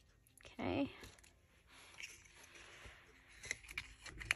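A short vocal sound about half a second in. Then faint rustling of a small sticker box and its packaging being handled, with a few light clicks near the end.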